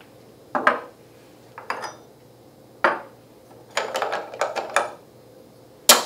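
Telescope eyepieces and a reflex finder being taken off the telescope and set down on a tabletop: a series of separate clicks and knocks, with a cluster about four seconds in and the loudest knock just before the end.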